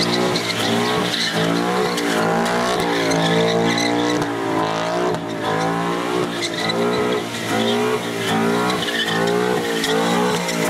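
2011 Ford Mustang 5.0's V8 revving up and down again and again while its rear tyres spin and squeal through smoky donuts.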